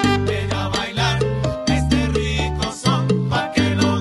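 A live son band playing an instrumental passage, with an electric keyboard and an acoustic guitar over long, held bass notes.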